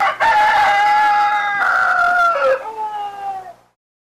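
A rooster crowing: one long cock-a-doodle-doo of about three and a half seconds, falling in pitch and fading at the end. It is dropped in as a wake-up signal that it is the next morning.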